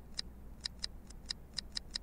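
Short electronic menu-navigation clicks, about seven of them at uneven spacing, as the Plex media center's movie list is stepped through with taps on an iPhone remote app.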